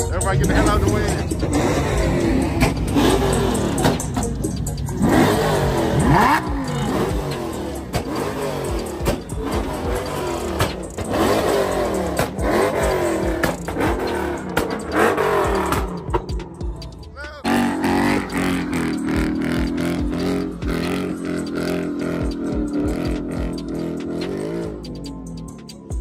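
A car engine revs up and down again and again over crowd voices. About two-thirds of the way through, the sweeps give way to a steadier held sound.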